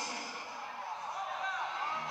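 A man's voice speaking over arena background noise, with a few short whistle-like rising and falling tones in the second half.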